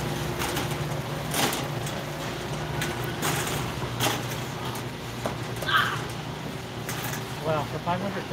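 Warehouse store ambience: a steady low hum, scattered sharp knocks and clatter, and indistinct voices, with a voice near the end.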